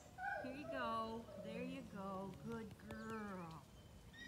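A muzzled dog whining and moaning in a series of drawn-out calls that fall in pitch: its protest at wearing a muzzle for the first time.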